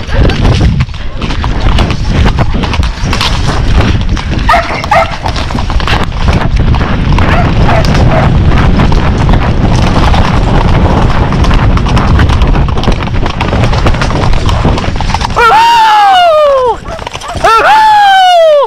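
Horse galloping on a dry dirt track, hoofbeats under heavy wind rumble on the rider's head-mounted camera microphone. Short calls come about four to five seconds in, and near the end two long, loud calls rise and then fall in pitch.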